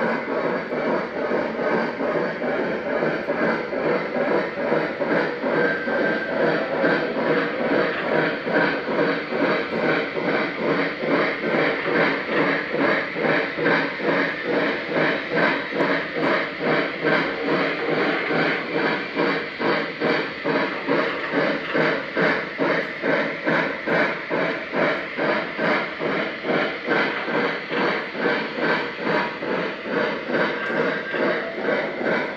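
Electronic steam-locomotive chuffing from the onboard sound systems of Lionel O-scale Pennsylvania Railroad L1 2-8-2 models running doubleheaded: a steady, quick rhythm of chuffs that keeps an even beat.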